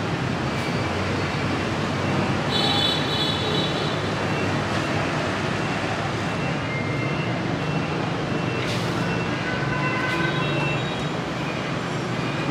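Steady road traffic noise, with a few short high-pitched tones sounding over it.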